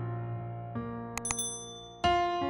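Piano chords ringing and fading, changing to a new chord under a second in. About a second and a quarter in, a couple of clicks and a high bright bell ding from a subscribe-button sound effect sound over the piano.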